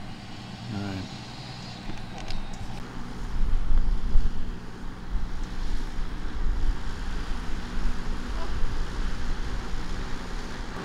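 Wind buffeting the microphone in irregular gusts, loudest about four seconds in, over a steady low hum.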